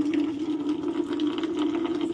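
A steady low hum, unchanging in pitch, with faint light ticks scattered over it.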